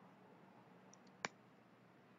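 A single sharp computer mouse click a little past a second in, with a faint tick just before it, over near silence.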